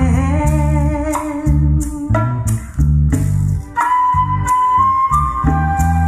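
A recorded pop song playing through hi-fi loudspeakers driven by a tube amplifier with an RCA 12AU7 tube under test. This stretch is an instrumental passage between sung lines: a steady bass beat under a held melodic lead that moves higher about four seconds in.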